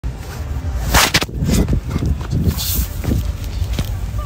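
Quick footsteps and fabric rustling over heavy wind rumble on the microphone, with a sharp swish about a second in.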